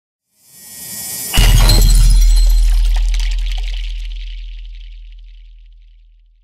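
Cinematic intro sting: a rising swell that breaks at about a second and a half into a heavy deep bass hit with a bright, sparkling high end, the low tone then fading slowly over the next four seconds.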